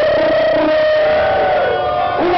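A man's long, held shout into a microphone, amplified through the PA, the pitch stepping slightly higher in the second half.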